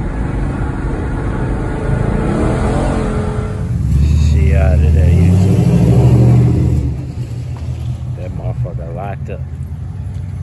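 LS V8 engine of a swapped 1995 Impala SS revving hard for about three seconds, its pitch rising, then dropping back to a steady idle. Before the rev there is car engine and road noise heard from inside a moving car, and men's voices shout over it at times.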